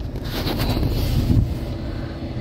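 Wind buffeting the phone's microphone: an irregular low rumbling noise that swells in the middle and eases off near the end.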